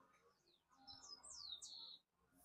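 A songbird chirping faintly: a quick run of high, downward-sliding notes in the second half, over a quiet background.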